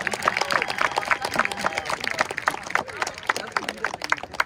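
A small crowd clapping and cheering, the claps quick and irregular with shouting voices mixed in.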